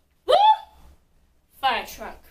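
A woman's voice calling a short rising 'woo' about a quarter second in, then a quick falling vocal sound near the end. These are sung-out cues marking the beats of a dance move.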